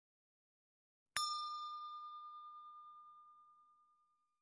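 A single bell-like ding sound effect struck once about a second in, ringing one clear tone that fades away slowly over about two and a half seconds: the notification-bell chime of an animated subscribe-button intro.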